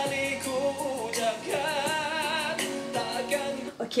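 A male singer's live pop-ballad performance with band accompaniment: sung phrases with a long note held with vibrato about halfway through. The music cuts off just before the end.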